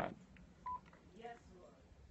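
Quiet room tone broken by a single short electronic beep, one steady high tone lasting about a tenth of a second, a little under a second in; a faint voice is heard in the background just after it.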